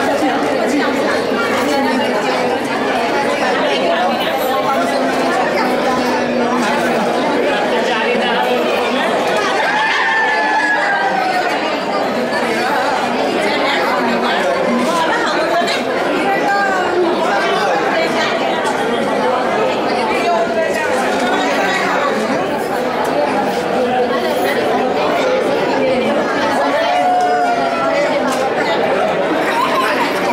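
A crowd of party guests talking at once: a steady din of overlapping conversation with no single voice clear, a few voices rising above it now and then.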